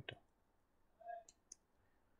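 A few faint computer keyboard keystroke clicks, two of them about a second and a half in, with a brief soft tone just before them; otherwise near silence.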